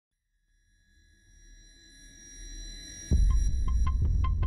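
Trailer intro music. High, steady tones fade in and swell, then about three seconds in a deep bass beat comes in with quick ticking percussion, about five ticks a second.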